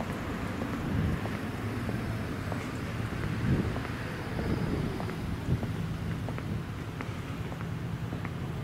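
Street ambience dominated by a low rumble of road traffic and wind on the microphone, with a faint engine hum in the later part and scattered light ticks.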